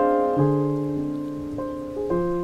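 Solo piano in an instrumental break, playing chords that are struck and left to ring and fade. A new low chord comes in about half a second in and another near the end.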